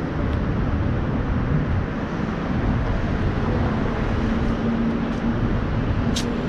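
Steady street traffic noise from passing and nearby cars. A low steady hum joins about halfway through.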